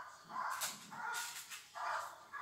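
A dog barking repeatedly at a helper in a protection suit: three barks, evenly spaced. This is the hold-and-bark (guarding) phase of protection work, with the dog holding the helper at bay by barking.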